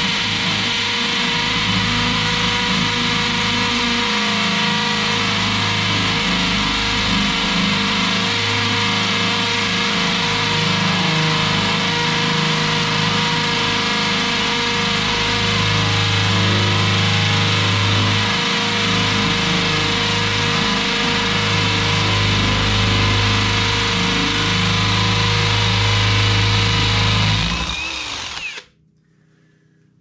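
Parkside Performance PSBSAP 20-Li A1 brushless cordless hammer drill in hammer mode, second gear, boring a 12 mm masonry bit into a concrete paving block. A steady motor whine runs over the rattle of the hammer action and grinding masonry, continuous until the drill is switched off about 28 seconds in and winds down.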